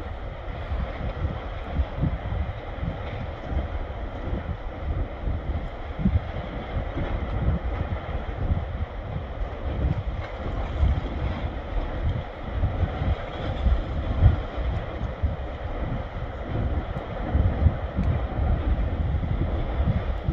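Wind buffeting the microphone in uneven gusts: a rough, rumbling noise with no steady tone.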